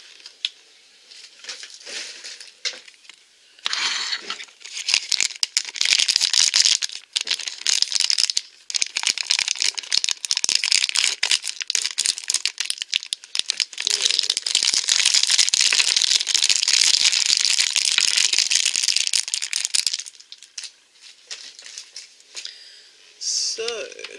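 Plastic blind-bag packaging crinkling and rustling as it is handled, near-continuous from about four seconds in until shortly before the end, after a few light scattered clicks.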